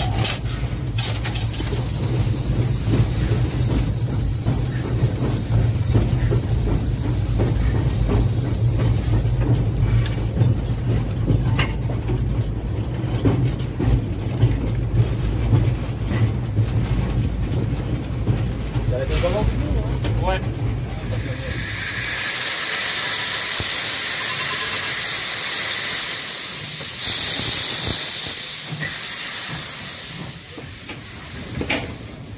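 Haine-Saint-Pierre tank steam locomotive heard from its footplate while running, a steady low rumble with knocks and rattles. After about twenty seconds this gives way to loud steady steam hissing from the locomotive, venting low at the cylinders.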